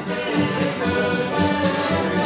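Live folk dance band playing a traditional dance tune with a steady beat.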